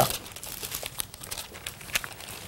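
Thin Bible pages being leafed through: a run of irregular paper rustles and crinkles.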